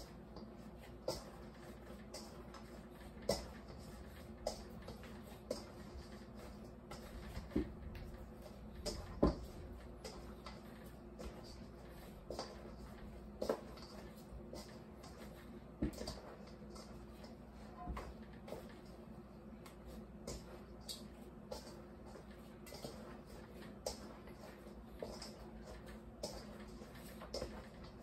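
Hands kneading bread dough by hand in a stainless steel bowl: soft irregular knocks and thuds every second or two as the dough is pressed and turned against the bowl. The dough is being worked until it turns elastic.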